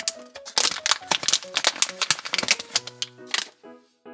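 Foil blind bag crinkling and crackling as it is torn open and handled, in quick sharp strokes that die away near the end. Soft background music with held notes plays underneath.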